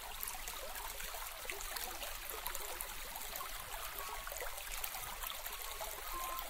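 Steady trickle of flowing water, like a small stream, with many faint splashes in it.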